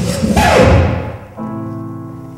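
A live band's loud party music with a heavy beat ends about a second in with a falling sweep. A held keyboard chord then sounds quietly.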